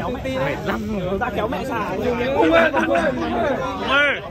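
Crowd chatter: several people talking over one another, with no single clear voice.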